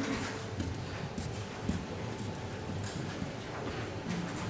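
Audience members in a hall stirring and getting up: scattered footsteps, knocks and rustling over low room noise.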